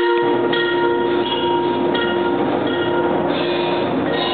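Percussion ensemble playing: sustained ringing tones with high mallet notes changing about every half second. A dense rushing noise enters at the start and continues underneath.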